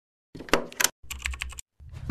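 Intro sound effect: two quick runs of sharp clicks like keyboard typing, then a deep boom swelling in just before the end.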